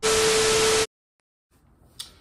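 A loud burst of TV-style static hiss with a steady mid-pitched tone running through it. It lasts just under a second and cuts off abruptly into dead silence.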